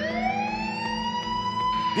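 A siren wail rising in pitch over about a second and a half, then holding steady near the end.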